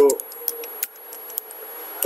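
Computer keyboard typing: a few separate keystroke clicks as a word is typed, spaced out and unhurried.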